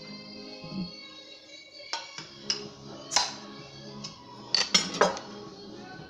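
Glass clinks and sharp knocks as a beer bottle is opened and handled and beer is poured into a stemmed glass, several short clicks from about two seconds in, the loudest near the middle. Steady background music plays underneath.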